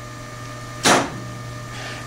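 Steady electrical hum in a small room, with one short hiss a little under a second in.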